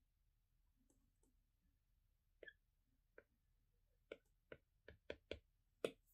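Stylus tip tapping on a tablet's glass screen while dabbing on paint: a few faint ticks, then about nine short, sharp taps that come faster in the second half.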